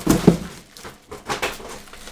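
A short voiced sound, then a few brief crackles and taps as a bubble-wrapped package is picked up and handled.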